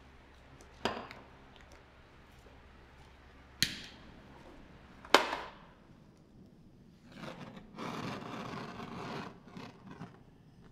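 Three sharp clacks, then a can of butane fuel sprayed onto sugar work in a hiss lasting about two seconds, followed by a couple of short puffs. A low hum underneath stops about halfway through.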